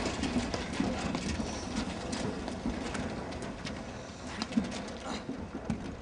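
A platform tennis rally: irregular sharp knocks of the ball on the paddles and the court, mixed with the players' footsteps.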